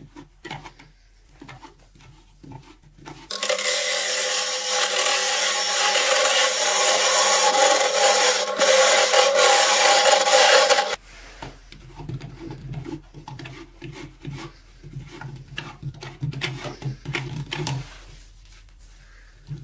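Wood lathe spinning with a gouge cutting the turning wood: a loud, steady cutting hiss over a motor hum that starts suddenly about three seconds in and cuts off suddenly about eight seconds later. Before and after it, a hand tool scrapes and rubs irregularly at the stopped wood piece.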